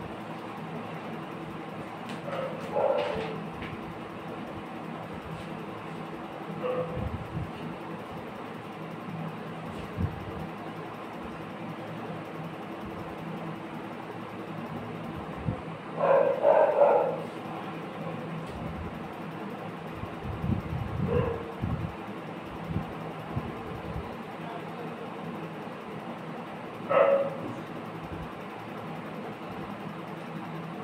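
A dog barking a few times at intervals, the loudest barks about halfway through, over a steady low hum.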